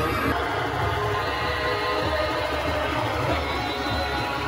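Loud music with heavy bass played over a wedding procession's DJ sound system.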